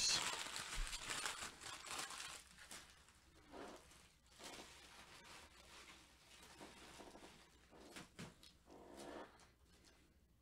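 Foil trading-card pack wrappers crinkling and rustling as they are handled. The crinkling is densest in the first two or three seconds, then gives way to softer, scattered rustles and light taps.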